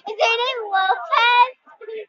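A young girl's high-pitched voice in drawn-out, sing-song vocalizing with no clear words, for about a second and a half, then a few short scraps of sound near the end.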